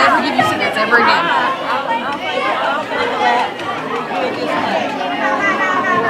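Indistinct overlapping chatter of several young voices in a large room.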